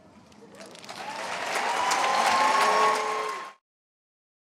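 Large audience applauding with some cheering voices, swelling over about two seconds, then cut off suddenly near the end.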